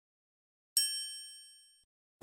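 A single bright, bell-like ding sound effect on an animated intro, struck once about three quarters of a second in and ringing out for about a second.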